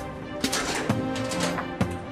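Background music from a drama score: held notes over a sharp, clicking percussive beat, with a short noisy swell about half a second in.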